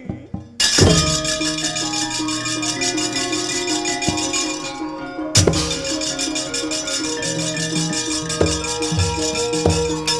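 Javanese gamelan ensemble starting up loudly about half a second in and playing a fast passage: many ringing pitched tones of the metallophones over rapid clattering strokes and low drum notes, with a heavy stroke about five and a half seconds in.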